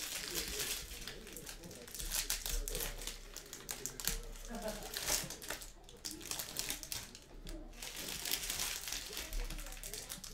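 Foil trading-card pack wrappers crinkling and tearing as several packs are opened and handled, a dense, continuous run of crackles.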